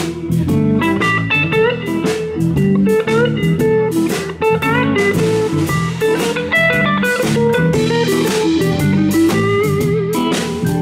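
Live blues band: a teardrop-bodied electric guitar plays a lead line with bent notes over drums.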